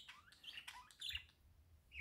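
Near silence in a pause between words, with a few faint, brief bird chirps in the first half.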